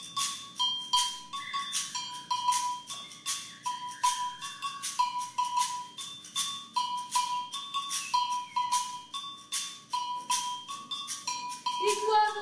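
Live hand percussion with a whistle: shakers rattle in a steady rhythm while a small whistle blown in cupped hands switches back and forth between two close high notes.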